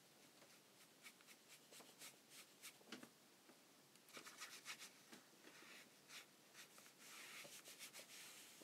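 A run of faint, short strokes: a water brush pen brushing watercolour paint across sketchbook paper.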